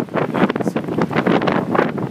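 Strong, gusty wind buffeting the microphone: a loud, uneven rushing that surges and drops from moment to moment.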